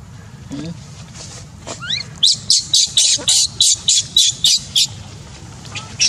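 A bird calling: a rising whistle, then a run of about eleven short, high chirps at roughly four a second, stopping near the end.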